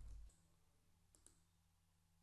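Near silence with a low rumble that dies away just after the start, then two faint clicks in quick succession about a second in, from the computer being used to run the script.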